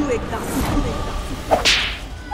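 A dramatic whip-crack and whoosh sound effect: a sharp crack about a second and a half in, then a short rising swish, over a low steady rumble.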